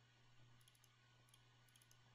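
Near silence with a low steady hum, broken by a few faint computer mouse clicks, some in quick pairs, as folders are opened in a file dialog.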